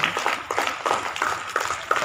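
A few people clapping by hand, the claps quick and uneven.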